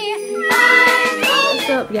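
A cat meowing: one loud, drawn-out meow that starts about half a second in and falls in pitch, over Christmas music.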